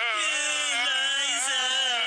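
A recorded clip of a person wailing, long unbroken cries with a wavering pitch, played as a stand-in for heavy crying.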